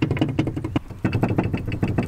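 The Argo 8x8's small engine idling, with a rapid even beat of about ten pulses a second.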